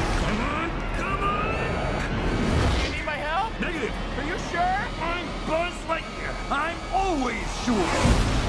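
Spaceship thrusters rumbling low during a takeoff, under a trailer sound mix with music. From about three seconds in comes a quick run of short, bending, chirping tones.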